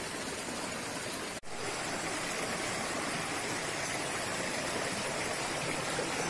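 Shallow rocky river flowing over and between boulders: a steady rush of running water, broken by a momentary gap about one and a half seconds in.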